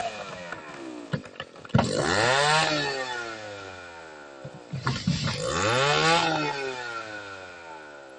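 Two-stroke chainsaw cutting into a large tree trunk, revved twice about three seconds apart: each time the engine speeds up sharply, then winds down slowly.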